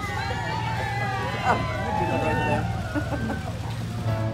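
A crowd of onlookers chattering and calling out, many voices overlapping, over the steady low hum of an idling car engine.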